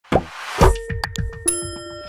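Animated logo sting made of sound effects: two low falling thumps, then a quick run of sharp pops and clicks that ends in a held, bell-like chime.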